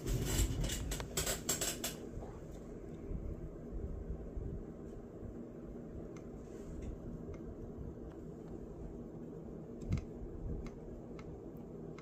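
A quick run of clicks and rattles in the first two seconds as a hot glue gun and a detached laptop fan are handled on a wooden desk, then a steady low hum with a few faint ticks while the glue gun's nozzle is held to the fan's plastic housing.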